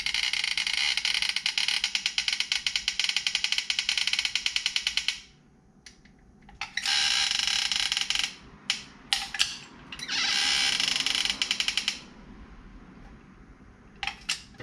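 Dispensing gun pushing two-part epoxy anchoring adhesive out of its cartridge into holes drilled in concrete. It makes a rapid, rattling buzz in three bursts: a long one of about five seconds, then two shorter ones, with a few separate clicks in between.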